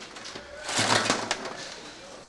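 Oyster shucking room at work: oyster shells clattering and shucking knives scraping and clicking on shell, busiest in the middle.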